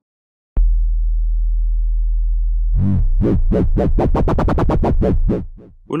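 Aalto CM software synthesizer playing a low sustained note from its basic sine-wave patch. About two and a half seconds in, LFO modulation of pitch and timbre comes in as the mod wheel is raised, turning the note into a fast rhythmic warble of several pulses a second that quicken. It fades out just before the end.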